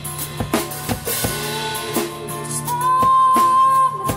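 Live band music: a drum kit keeps a steady beat under a strummed acoustic guitar. Near the end a long high note is held and is the loudest part.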